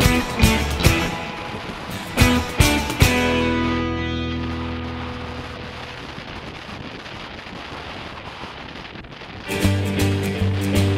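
Hard-rock music with electric guitar and drums: a few last hits in the first three seconds, then a held chord ringing out and slowly fading. Near the end another piece of music starts abruptly with a strong bass.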